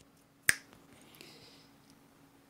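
A single sharp click of a light switch being flipped on, about half a second in, over a faint steady hum.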